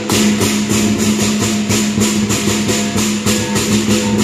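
Southern lion dance percussion: a big drum, clashing cymbals and a gong playing a rapid, steady rhythm to accompany a high pole lion routine.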